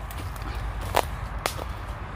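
Footsteps through woodland leaf litter and fallen twigs, with two sharp cracks about a second in and half a second later.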